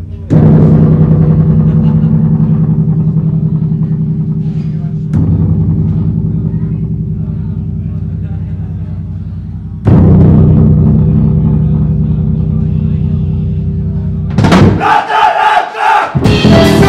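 Live rock band hitting a loud low chord three times, about five seconds apart, each left to ring and slowly fade. Near the end the full band comes in with drums and horns.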